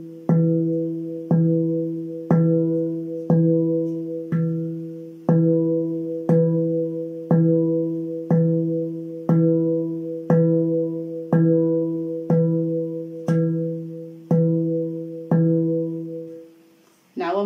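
Handpan's central ding note struck with alternating hands in an even single-stroke pulse, about one stroke a second. Each stroke rings on as a low steel note with higher overtones, fading until the next strike.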